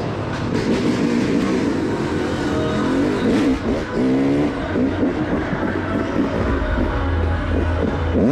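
Dirt bike engine running under the rider, revved several times in quick rises and falls around the middle, then holding a steadier low drone.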